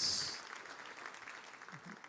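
Light audience applause dying away, with a short hiss at its start.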